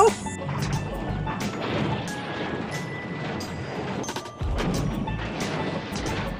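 A movie clip's soundtrack of repeated crashing and banging, with music underneath and a dense rumbling noise, briefly dropping off about four seconds in before resuming.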